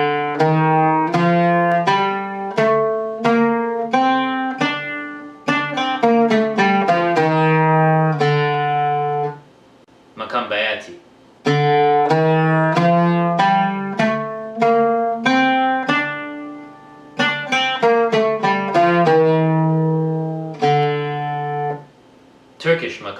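Persian, Turkish and Arabic heptatonic scales played note by note on a plucked string instrument. The notes step up and down the scale in runs, with a short break about ten seconds in.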